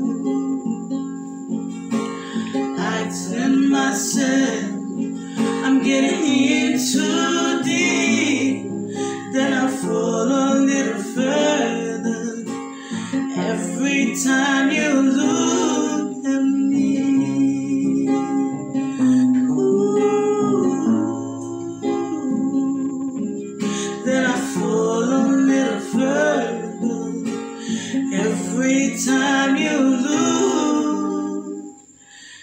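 A woman singing a slow song live, accompanied by a strummed acoustic guitar.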